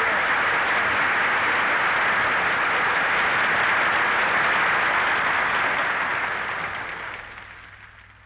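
Studio audience applauding, steady and then fading out over the last two seconds.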